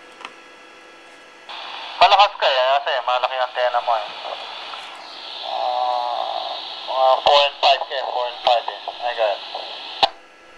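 A ham radio operator's voice coming back over an analog FM link through a transceiver's speaker, with a steady hiss behind it; the squelch opens about a second and a half in. The hiss is the sign of a weak signal, reading only S1 to S2.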